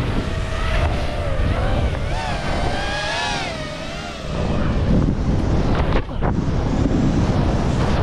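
Wind rushing over a helmet-mounted action camera as a freeride skier skis fast down a snow face. A wavering whistling tone runs through the first half. Later the skis scrape and hiss through the snow, with a sharp impact about six seconds in as the skier lands in a spray of snow.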